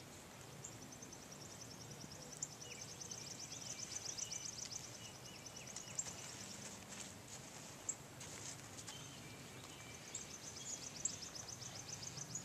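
Songbirds singing: one high, rapid trill of repeated notes runs for several seconds, breaks off, and returns near the end, with shorter calls from other birds. A few faint knocks sound between them.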